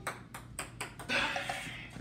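Ping-pong ball bouncing on a hard tabletop: a quick run of about six light clicks in the first second, then a softer scuffing noise.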